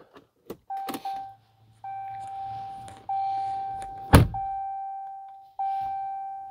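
A 2022 Jeep Cherokee's electronic dashboard chime as the ignition is switched on: a single bell-like tone repeating about every 1.2 seconds, each fading away. A few clicks come just before the chiming starts, and a loud thunk comes a little after four seconds.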